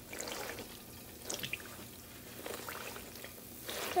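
A pua, a sweet dough fritter, frying in hot oil in a wok: the oil bubbles and sizzles with a few soft crackles as a perforated slotted spoon presses the fritter into it.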